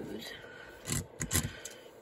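Small plastic LEGO race car pushed and rolled across a wooden tabletop, with two short knocks about a second in.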